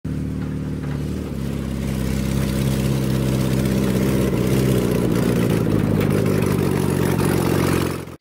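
A 1954 VW microbus's air-cooled flat-four engine running as the bus drives up toward the camera, its pitch shifting about a second in and the sound growing louder before holding steady. It cuts off suddenly at the end.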